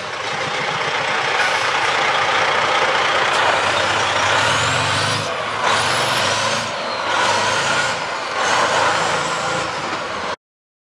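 Heavy truck's Detroit Series 60 diesel idling under a loud, steady hiss, which drops out briefly a few times in the second half.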